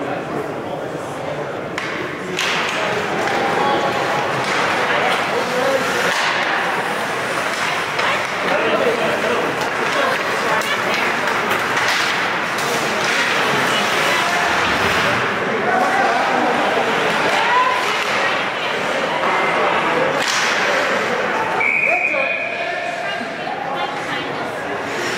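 Ice hockey game in an arena: overlapping shouts and calls from players and spectators, with knocks of sticks and puck on the ice and boards. A short referee's whistle blast sounds near the end.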